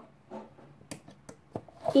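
A few light, separate clicks and taps from a cordless drill bit and hands against a DVD player's sheet-metal case, with the drill motor not running.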